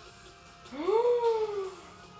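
A woman's long drawn-out "ooh" of excitement, rising sharply in pitch and then sliding slowly down for about a second, over faint pop music playing from a screen.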